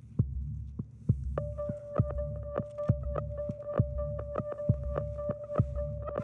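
Background music: a throbbing bass pulse with sharp clicks about three times a second, joined about a second and a half in by a single held high note.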